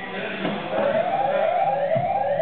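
An electronic siren-like wail starting about half a second in, its pitch sweeping upward again and again about twice a second.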